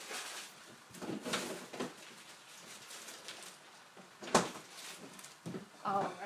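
Kitchen handling noises: rustling and clattering as things are picked up and moved, with one sharp knock a little over four seconds in, the loudest sound.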